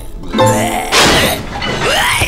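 Cartoon soundtrack: music with a loud thunk about a second in, followed by sliding tones that fall in pitch, as the character falls flat onto his back.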